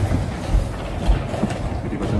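Wooden chess pieces knocking down on a wooden board and the chess clock being tapped in quick blitz play: an uneven clacking, with dull thumps about half a second and a second in.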